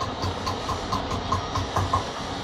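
Hand chisel being tapped with a hammer against white marble, light even strikes about four to five a second, the last couple a little louder.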